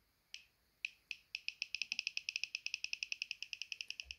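A handheld RAYSID gamma spectrometer chirping once for each detected count. A few scattered chirps come first, then a rapid, steady run of about ten short, high chirps a second as it rests on the radioactive thorium glass pendant.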